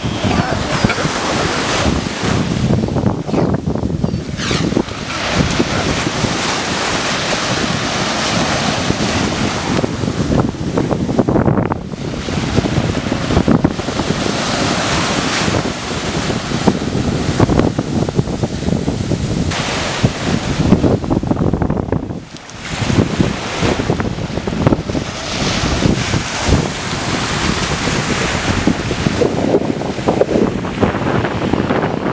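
Waves breaking on a sandy beach, with heavy wind buffeting the microphone. The noise is loud and steady, with brief breaks in it a few times.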